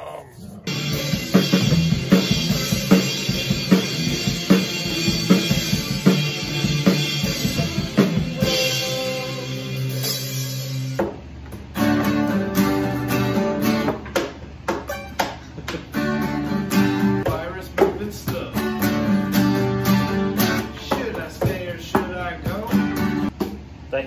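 Several acoustic guitars strummed and picked together in a loose jam. The playing breaks off suddenly about halfway through and starts again.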